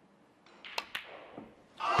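Snooker balls clicking in a hushed arena: the cue tip striking the cue ball and the cue ball hitting the black in quick succession, then a duller knock. Near the end the crowd breaks into a groan as the black for a maximum is missed.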